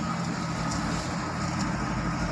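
Steady road-traffic noise with a low, even engine hum.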